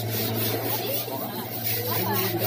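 Hands scrubbing an elephant's wet hide, a rasping stroke repeated about three or four times a second, over a steady low hum.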